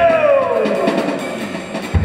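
A singer's voice in a Georgian folk-jazz vocal ensemble slides down in pitch over about a second and a half, fading as the sung phrase ends. A new phrase starts sharply right at the end.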